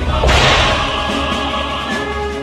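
A sudden whip-like swoosh and crash sound effect about a quarter second in, fading over about a second, for a fighting-game-style newcomer reveal, over music.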